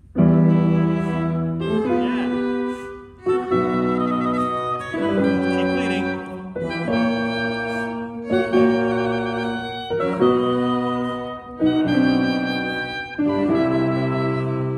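An instrumental ensemble plays a slow classical sinfonia in sustained chords. It comes in suddenly at the downbeat and moves to a new chord every second or two.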